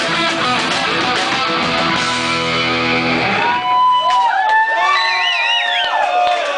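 A live rock band with distorted electric guitar and drums playing loud and full. About three and a half seconds in the band stops, leaving high sliding, wavering tones ringing on.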